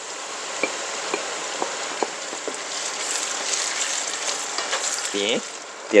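Hot oil sizzling in a wok as shredded dried fish is tipped into frying shallots. There are a few light taps about every half second in the first half, and the sizzle swells around the middle.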